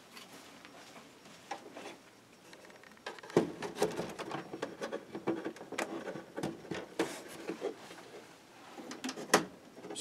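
Hands fitting a toy sail barge's fabric sail canopy and thin plastic poles: fabric rustling and many small plastic clicks and taps. The sounds are faint for the first few seconds and grow busier from about three seconds in.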